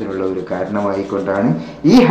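A man's voice talking, with a brief dip near the end before the speech comes back louder.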